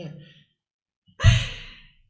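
The tail of laughter fades out, then a little over a second in comes a single loud sigh, a breath pushed out after laughing, that trails off.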